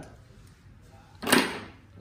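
A bundle of audio cables with metal XLR connectors is set down onto a table, making one brief thud and rustle a little over a second in.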